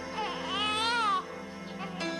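An infant crying: one wail about a second long that rises and falls in pitch, over steady background music.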